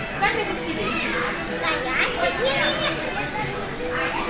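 Indistinct children's voices and chatter in a busy restaurant dining room.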